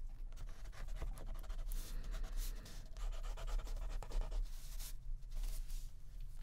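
Felt-tip pen scratching across the paper of an art journal page in runs of short strokes with brief pauses, over a steady low hum.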